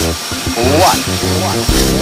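Beer commercial jingle: voices singing "What? What?" over a bouncy band accompaniment with a steady bass line.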